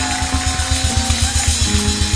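Worship band music: held keyboard chords over a fast, steady low pulse, with no singing.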